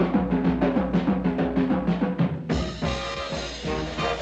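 Swing-era drum kit played in a fast break of rapid, evenly spaced strokes on tuned drums. About two and a half seconds in, the full swing band with brass comes back in.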